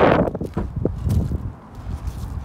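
Footsteps crunching on gravel as a person walks a few paces. A rush of noise fades out at the start.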